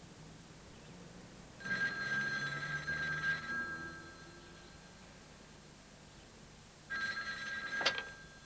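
Telephone bell ringing twice, about five seconds apart. The second ring is cut short by a click near the end.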